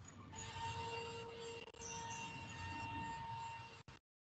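Faint room noise picked up by an open video-call microphone, with a steady low hum made of a few thin tones. The audio cuts out briefly near the end.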